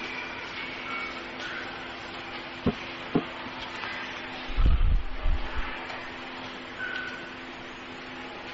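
Pause in a talk over a handheld microphone: a steady low hum and hiss from the sound system, two small clicks about two and a half and three seconds in, and a brief low rumble just past the middle.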